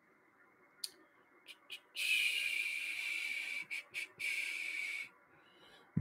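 A few faint clicks, then a soft high hiss lasting about three seconds, broken twice briefly.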